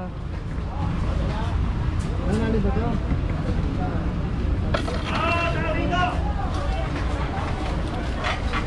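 Busy street ambience: other people's voices in the background, one voice clearer for about a second around five seconds in, over a steady low rumble.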